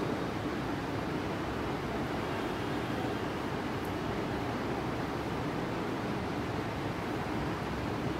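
Steady, even background hiss of room noise with no speech.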